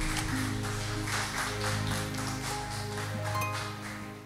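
Instrumental music with sustained low notes and a light, even beat, beginning to fade out near the end.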